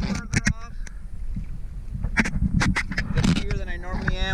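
Small sea waves slapping and splashing against a camera held at the water's surface, in a few sharp strokes. Underneath is a low rumble of wind and water on the microphone.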